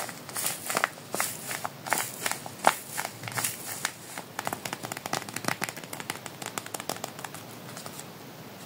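A paper squishy crinkling and crackling as fingers squeeze and press it. The crackles are louder and more spaced out at first, then quicker and smaller from about halfway, and they die away near the end.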